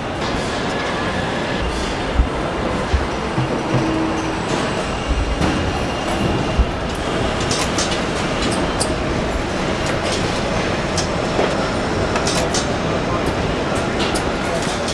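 Car assembly-line machinery running: a steady mechanical rumble and hum with scattered metallic clanks, a few low thumps in the first half and frequent sharp clicks in the second half.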